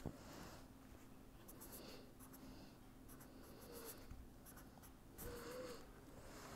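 Faint scratching of a pen drawing on paper, in a few short separate strokes.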